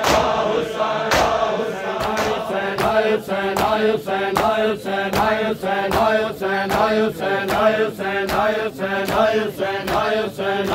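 Group of men chanting a noha in unison. From about two seconds in, it is joined by a steady rhythm of open-handed chest slaps (matam), nearly three a second.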